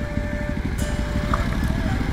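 Motorcycle engine running steadily at low road speed, a low, even rumble picked up by a microphone inside the rider's helmet.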